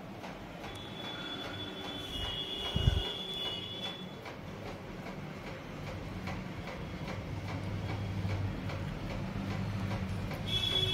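A stuffed paratha frying in oil on a tawa, sizzling steadily while a wooden spatula turns and presses it. There is a single knock about three seconds in. A thin high whine comes and goes during the first few seconds.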